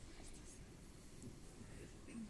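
Near silence: faint hall room tone with a few faint murmuring voices and light rustling.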